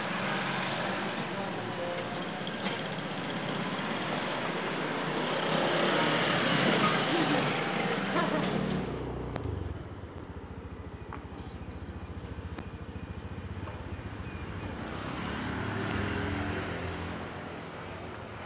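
Motorcycles passing on a street, loudest around six to seven seconds in. After a sudden change about nine and a half seconds in, a small scooter engine running slowly with a steady rapid pulse, faint regular high chirps above it, and another vehicle passing near the end.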